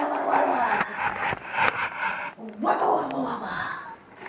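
Wordless vocal sounds in two drawn-out stretches, the first about two seconds long and the second shorter after a brief break.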